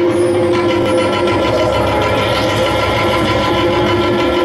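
Loud live stage music: a held, organ-like keyboard chord over a fast, rumbling drum roll.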